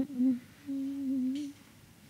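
A person humming: a short hum at the start, then a level, held hum for just under a second that stops about halfway through.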